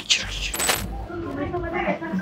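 A short, bright metallic clink about half a second in, over faint background voices.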